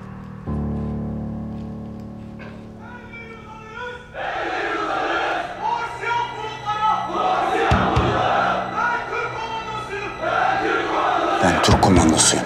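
A low dramatic music swell, then from about four seconds in a crowd of soldiers shouting a battle chant in unison, getting louder, over the music.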